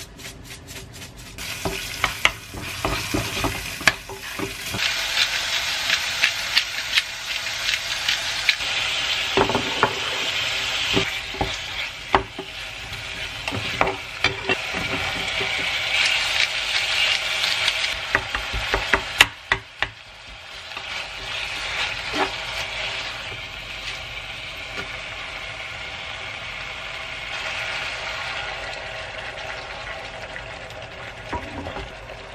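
Food frying in olive oil in a pan, garlic at first and then shrimp and cherry tomatoes, with a steady sizzle. A wooden spatula scrapes and taps against the pan as the food is stirred. The sizzle dips briefly about two-thirds of the way through, then builds again.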